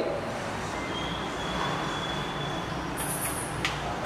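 Steady rumbling background noise with hiss, a faint high whistle in the middle, and a brief high hiss and a click near the end.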